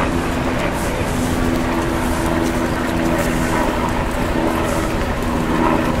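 City street traffic: a steady wash of traffic noise with the low, even hum of a vehicle engine running close by.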